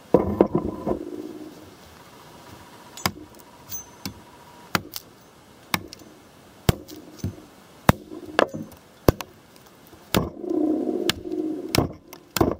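Ontario RTAK II large fixed-blade knife chopping into a wooden stick, which is being shaped into a tent stake. It makes about a dozen sharp, irregularly spaced knocks.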